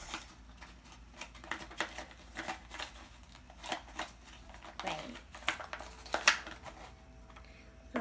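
Small plastic glitter shaker bottles being handled together, clicking and knocking against each other in irregular light clicks.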